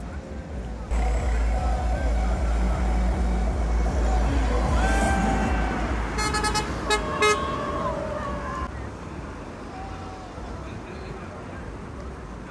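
Street noise from passing cars with a low rumble and a crowd of voices calling out. About six to seven seconds in there are a few short, sharp car-horn toots.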